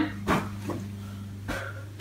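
A steady low hum with a few faint, short knocks scattered through it.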